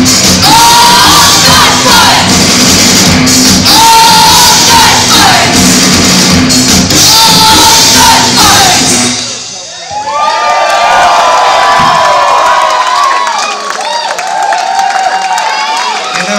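Live rock band with drums, guitar, hand cymbals and a group of voices singing, loud, stopping abruptly about nine seconds in. The audience then cheers and whoops.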